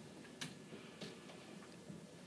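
Three light taps of metal underarm crutches and footsteps on wooden stairs as a person climbs them on crutches, using the handrail.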